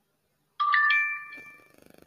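A phone pronunciation-practice app's success chime: three quick rising notes that stack up and ring out over about a second. It signals a word pronounced well, scored 'Excellent'.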